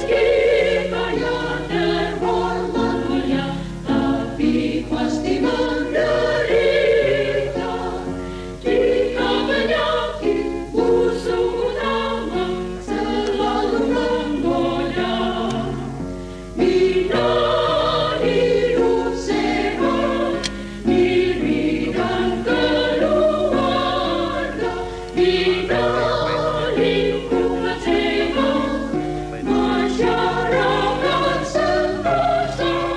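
A choir singing an Indonesian march song in a diatonic major key.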